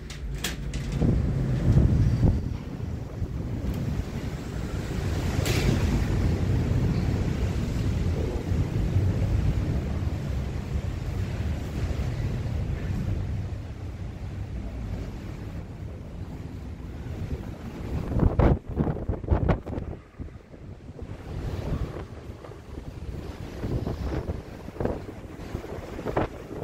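Wind buffeting the microphone on a ship's open deck at sea, a steady low rumble with a few louder gusts about three-quarters of the way through.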